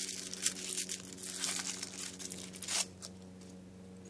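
Crinkling rustle of a small wrapping being pulled open by hand to free a padlock and its keys, irregular for about three seconds and then stopping.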